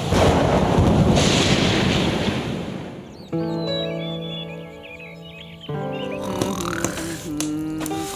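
Stormy night: heavy rain and wind with a roll of thunder, loud at first and fading over about three seconds. It then cuts suddenly to soft sustained music chords with brief high chirps over them.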